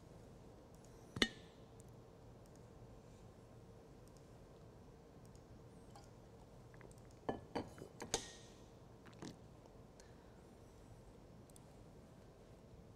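Faint room tone with a steady low hum, broken by a sharp clink about a second in and a cluster of four more clicks and clinks between about seven and nine seconds, like small hard objects being knocked or set down.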